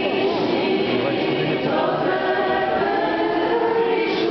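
Many voices singing a church hymn together, steady and continuous.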